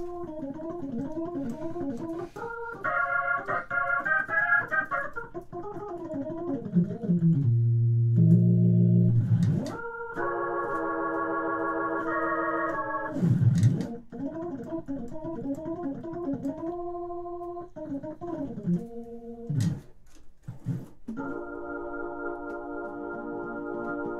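Hammond organ chords played through a Leslie speaker cabinet: sustained chords changing every second or two, with a loud low bass note held from about eight to ten seconds in.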